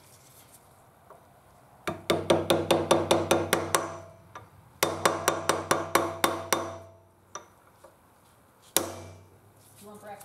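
A ball-peen hammer taps a steel punch to seat a small convex sealing plug into a hole in the floor jack's hydraulic pump body. There are two quick runs of about a dozen light metallic taps each, every tap with a short metal ring. One more tap comes near the end.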